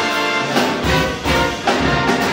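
Jazz big band of saxophones, trumpets and trombones with drums, upright bass and piano playing live, the horns hitting a run of short accented chords together in quick succession.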